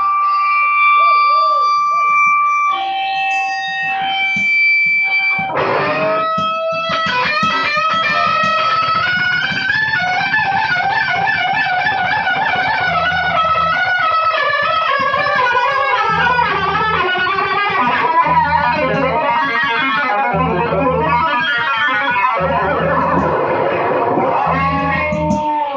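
Live rock band playing, led by a distorted electric guitar with effects. Held, ringing notes for the first five seconds or so, then a fast, busy guitar line over a low bass part that comes in every couple of seconds.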